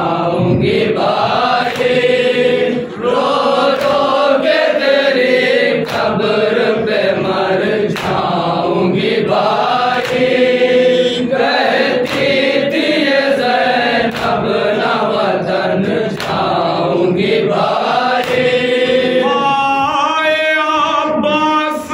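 Shia noha: a male reciter chanting a mourning lament into a microphone, with a group of men joining in chorus. Sharp slaps of hands on chests (matam) come at a fairly regular beat.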